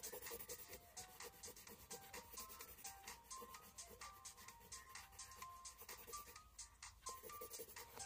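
Faint pencil scratching on paper in many quick strokes, shading in a solid dark area, over quiet background music with a simple melody.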